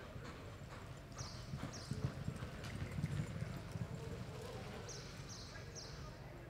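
Hoofbeats of a horse loping on soft arena dirt, followed by a louder, rougher stretch of scuffing and thudding about two to four seconds in as the horse comes to a stop.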